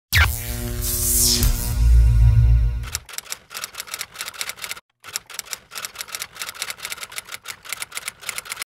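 A short musical sting with a deep bass chord and a high falling swoosh, then a quick run of typewriter key clicks as on-screen text types out letter by letter, with a brief pause just before the five-second mark.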